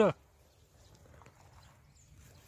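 A man's voice trails off right at the start, then near silence with only faint scattered rustling.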